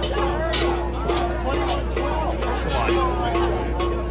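Spectators talking over one another in the stands of a rugby match, with music and a repeated held note in the background.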